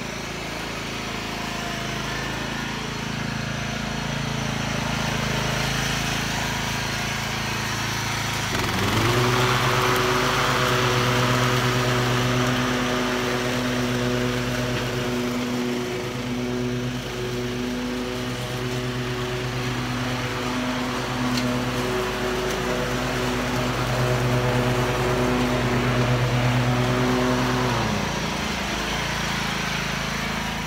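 Toro zero-turn riding mower engine running. About nine seconds in, its steady hum grows louder and holds an even pitch, then drops back near the end.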